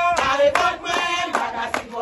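A group of people singing together while clapping their hands in a steady beat, about two to three claps a second.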